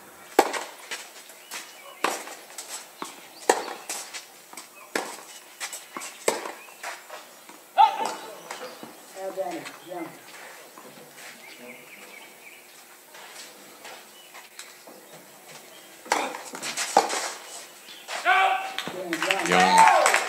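Tennis ball bounced on the court about every second and a half as a player readies to serve, later racket strikes of a rally, and near the end applause and voices.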